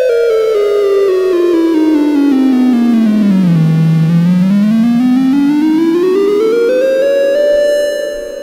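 Neutral Labs ELMYRA drone synthesizer oscillator in chromatic mode, its tune knob turned so the buzzy tone falls in discrete steps for about four seconds, bottoms out, then climbs back up in steps.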